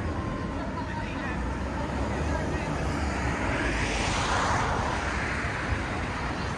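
Street noise with a vehicle passing: a steady low rumble, and a rushing sound that builds to its loudest about four to five seconds in, then fades.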